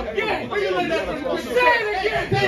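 Men's voices talking over one another in an argument, with no other sound standing out.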